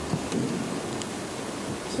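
Rumbling handling noise and rustle from a handheld microphone as it is lowered and passed on, with a few faint clicks.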